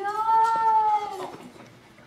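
A woman's high-pitched, drawn-out "ooh" of delight, held for about a second with a slight rise and fall in pitch, then fading away.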